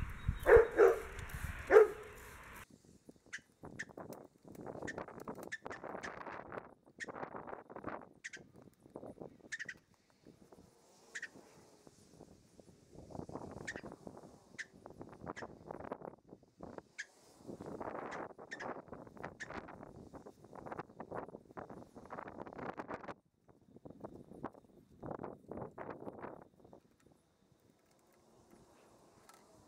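WD-40 aerosol can spraying in repeated hissing bursts of about a second each, sped up about four times. A few louder, shorter sounds come in the first two seconds.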